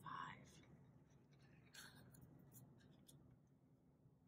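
Near silence with a few faint, light clicks of small wooden number cards being handled on a wooden table.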